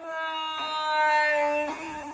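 A voice holding one steady sung note for about a second and a half, then breaking off, played back through a phone's speaker.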